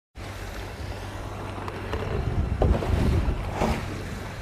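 Wind on the microphone over a low, steady motor drone, as from a launch running alongside a rowing double scull on flat water, with a couple of brief knocks past the middle.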